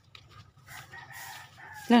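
A rooster crowing faintly, one drawn-out crow through the second half. Right at the end a loud voice cuts in.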